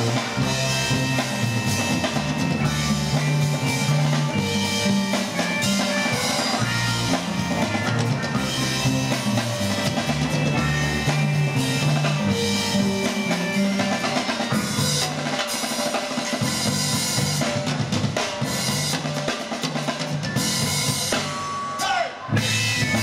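Live band music with a drum kit playing a steady groove of bass drum and snare under a repeating bass line and keyboard.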